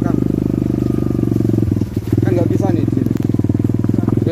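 A small motorcycle engine running steadily at low speed close by, easing off briefly about two seconds in.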